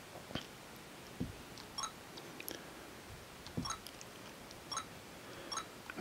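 Faint fingertip taps on the Sony DCR-HC21 camcorder's LCD touch panel as menu pages are stepped through: about seven soft, irregularly spaced taps, some with short high ticks.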